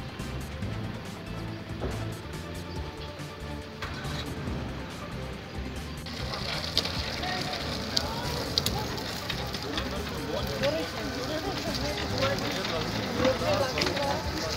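People's voices over background music. From about six seconds in the voices are more prominent, with scattered sharp clicks and knocks.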